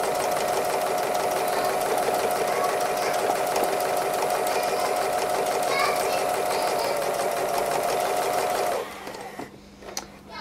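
Domestic sewing machine running steadily at speed, free-motion stitching through layered quilt fabric and appliqué. It stops about nine seconds in.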